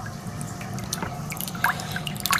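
Mini brushless 12 V DC water pump (DC30A-1230) running submerged: a faint, steady low hum, very low noise, with water dripping and trickling over it.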